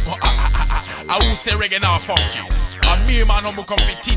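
G-funk hip-hop music: a deep bass line and beat repeating under a voice that raps over it.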